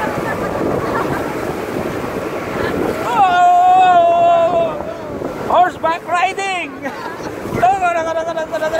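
Wind and water rushing past the microphone on a banana boat towed at speed over choppy sea. About three seconds in, a rider lets out a long, held whoop, followed by shorter yells.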